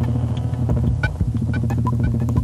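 Live modular synthesizer electronic music: a steady low bass drone under irregular clicks and short, high electronic blips.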